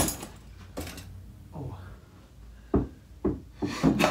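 A few scattered dull thumps in a small room, the clearest in the second half: a football being knocked about in a freestyle warm-up.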